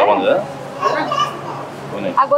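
People talking: conversational speech with nothing else standing out.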